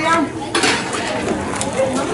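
Metal ladle, wire noodle basket and bowls clinking and clattering as noodles and broth are dished up from a large stockpot, a run of light clinks over background chatter.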